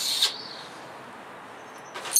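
A short hiss at the very start, then quiet room tone; right at the end a man suddenly splutters out a mouthful of red wine.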